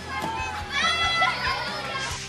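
A group of children shrieking and laughing excitedly, their high-pitched voices loudest about a second in.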